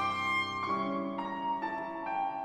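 Violin and piano playing together: the violin holds long notes over the piano, moving to a new note about every half second.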